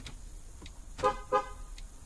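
2016 Ford F-150's horn giving two short chirps about a second in, a third of a second apart, answering the key fob's lock command in the three-lock sequence that triggers the truck's remote start. A few faint clicks sound around them.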